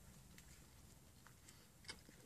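Near silence, with a few faint crackles from biting into and chewing a fried chalupa shell, and one slightly sharper crackle near the end.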